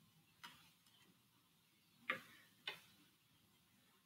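Near silence broken by three short clicks: a faint one about half a second in, then two louder ones about two seconds in, half a second apart.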